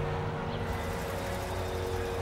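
Street traffic: cars driving past, with the general hum of a busy street.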